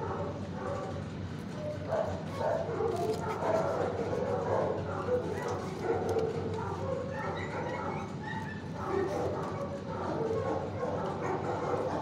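Dogs in a shelter kennel block barking, the barks overlapping with no break.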